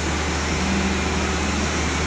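Steady drone of palm oil mill machinery, including the roller-chain and sprocket drive of the cracked mixture bucket elevator running, over a constant low hum.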